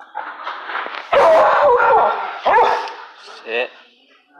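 A dog barking and yelping loudly in two bouts, the first about a second in and the second shortly after, with pitch that bends up and down, then a short wavering call near the end.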